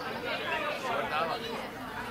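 Several people talking over one another, a steady chatter of voices with no clear words.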